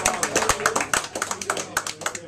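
Small audience applauding, with separate hand claps that grow sparser and quieter, and a few voices calling out.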